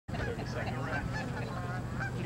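A flock of geese honking, many overlapping calls, over a steady low hum.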